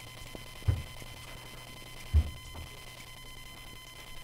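Low electrical hum with a thin steady whine, broken by two dull thumps: one just before a second in and a louder one a little after two seconds.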